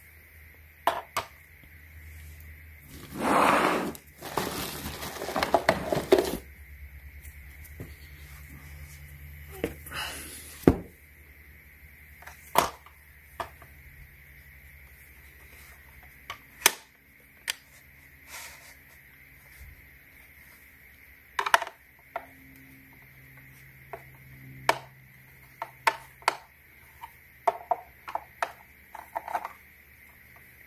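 Plastic housing parts of a handheld vacuum being handled and shifted during disassembly: scattered clicks and knocks, with a louder noisy stretch of rubbing about three to six seconds in.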